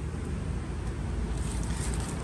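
Steady low rumble of wind buffeting the microphone outdoors, with no distinct clicks or knocks.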